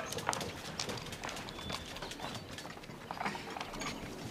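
Background street sounds: scattered light knocks and clicks, irregular and fairly dense, over a low murmur.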